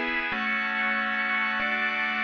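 Sustained synthesizer chords from the Arturia Pigments soft synth, played by the MIDIQ chord-progression sequencer. The chord changes about a third of a second in and again just past halfway.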